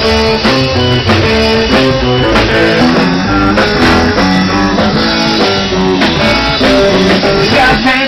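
Blues band playing live, a loud, steady instrumental passage with the guitar to the fore.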